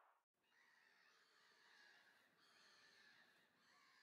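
Near silence: only a very faint hiss with a few faint high tones.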